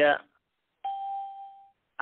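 A single chime-like ding, a clear tone that starts sharply just under a second in and fades out over about a second, coming right after the tail of a man's recitation.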